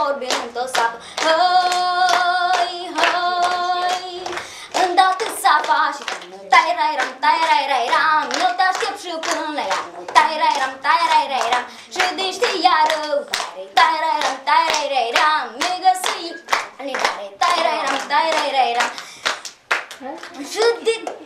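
A girl singing, with a group of children clapping along in a steady beat. She holds long notes about a second in, then carries on with a quicker, wavering tune.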